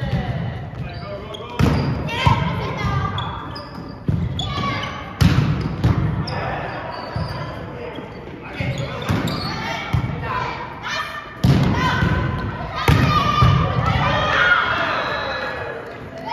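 A volleyball being struck by hand, again and again during a rally: sharp slaps, about seven in all, the loudest near the start, in the middle and a little before the end. Each slap echoes in the large hall.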